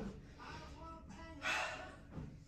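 A woman's short breathy gasp about one and a half seconds in, with faint breathing around it.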